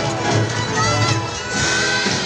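Parade music playing, with a large crowd cheering and children's shouts over it.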